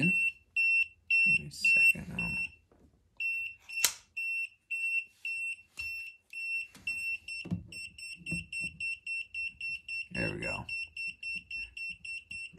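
Non-contact voltage detector of a GVDA 168B clamp meter beeping at live voltage: a short high-pitched beep repeating about three times a second, then quickening to about five a second from about two-thirds of the way in as it senses a stronger field, its high-voltage alert. A single sharp click about four seconds in.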